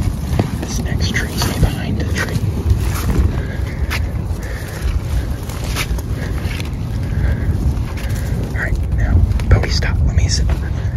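Wind rumbling on a phone microphone while walking through woods, with irregular footfall and handling knocks and brief faint whispers.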